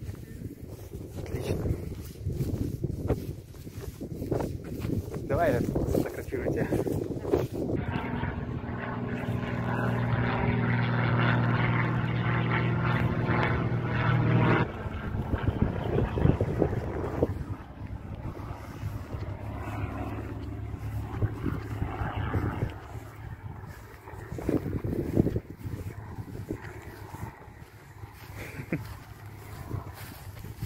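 Light propeller airplane flying overhead: a steady engine drone that swells about eight seconds in and cuts off suddenly about halfway through, with wind buffeting the microphone around it.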